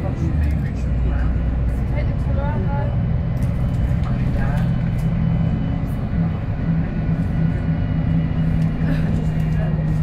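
VDL SB200 single-deck bus heard from inside the passenger saloon while under way, its engine running with a steady low drone that grows stronger in the second half. Faint passenger voices talk in the background.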